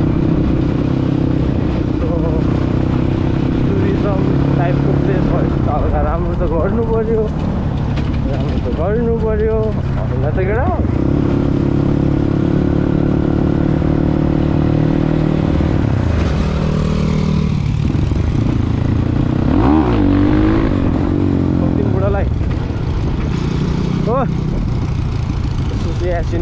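Dirt bike engine running while riding, a steady drone that rises and falls in pitch a few times as the throttle changes.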